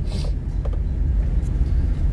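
Steady low rumble of a car driving along a street, heard from inside the moving car.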